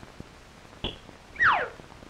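Cartoon sound effect: a click, then about half a second later a short, loud whistle falling steeply in pitch, over the hiss of an early sound-film track.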